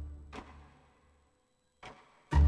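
Dry sampled orchestral string stabs from Symphobia, low staccato strings detuned down an octave with low pizzicato, played from MIDI with the delays switched off. A low bass note fades away over the first second, a short snappy hit comes about a third of a second in, then near silence until another short hit just before the end.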